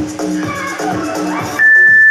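Background electronic dance music with a steady beat. Near the end, a loud, steady, high-pitched electronic beep cuts in, an interval timer signalling the end of a 30-second exercise set.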